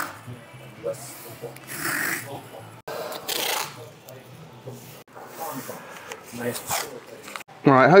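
Masking tape being pulled off the roll and pressed onto a vehicle's aluminium body panel, heard as several short tearing bursts a second or two apart.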